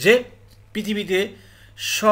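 Speech in two short phrases, followed near the end by an audible sharp intake of breath.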